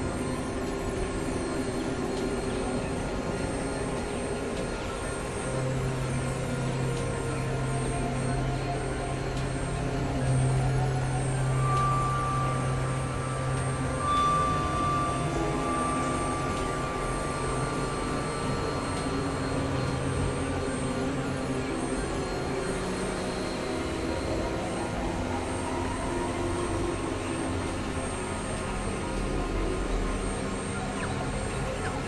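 Experimental electronic drone music: a dense, noisy wash of synthesizer tones with many steady held pitches. A low held note enters about five seconds in and fades near the fourteenth second, and a high thin tone holds from about twelve to twenty seconds.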